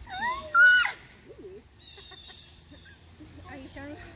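A girl's short, high-pitched squeal, swooping up and down in pitch, in the first second, followed by faint children's voices near the end.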